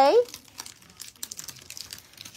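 Plastic packaging bag crinkling in faint, scattered crackles as it is worked open by hand: the opening is too small to pull the sheets out. A woman's called word ends just as it begins.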